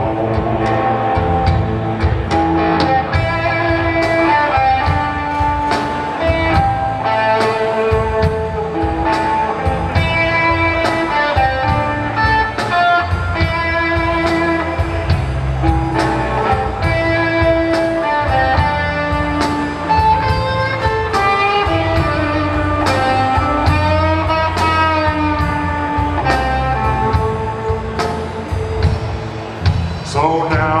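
Live blues band playing an instrumental passage: an electric guitar lead line with bent notes over a drum kit and bass.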